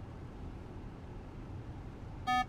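Steady low road and tyre noise inside the cabin of a moving car.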